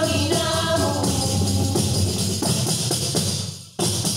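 Women's voices singing together over panderetas, Asturian frame drums with jingles, beaten in a fast rhythm. The singing stops about a second in while the drumming carries on, dropping away briefly just before the end and then coming back in.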